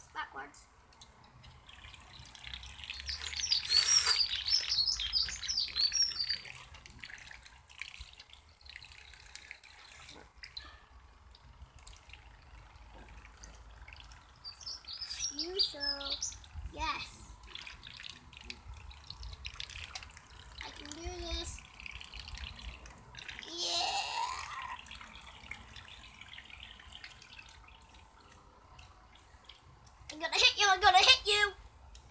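Water splashing and dripping in an inflatable paddling pool, with a child's wordless voice calling out a few times. There is a loud burst of high chirping a few seconds in.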